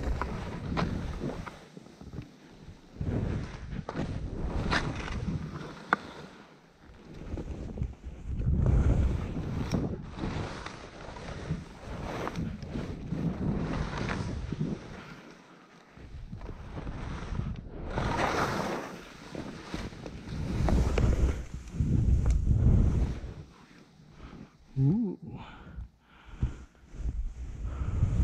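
Skis carving turns through snow, a hiss that swells and fades with each turn every few seconds, with wind rumbling on the microphone.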